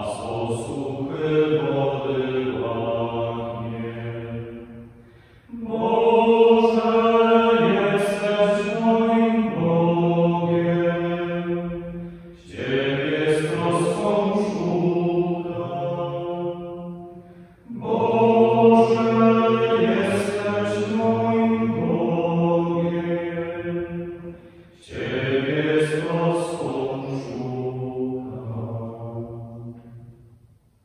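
Men's voices singing a liturgical hymn or chant in five long phrases, with a short break between each.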